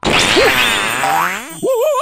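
Cartoon boing sound effect: a sudden hit followed by a springy glide falling in pitch. About one and a half seconds in, a cartoon character's wavering, quavering cry begins.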